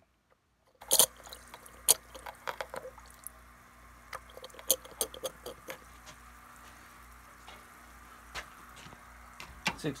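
Plastic gallon jug of nutrient water being handled and shaken to mix in pH adjuster: liquid sloshing with scattered knocks and clicks of the plastic, starting about a second in and thinning out after about six seconds, over a steady low hum.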